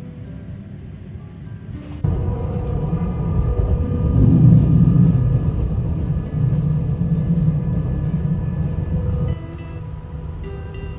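Low, steady running noise of a passenger train heard from inside the carriage. It starts suddenly about two seconds in and cuts off shortly before the end, over background music.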